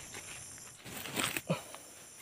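Faint rustling with a few short crackles of dry leaves and twigs being disturbed in forest undergrowth, the sharpest crackle about a second and a half in.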